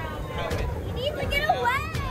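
Children and adults shouting and calling out over one another, with a high rising squeal near the end, over a steady low rumble.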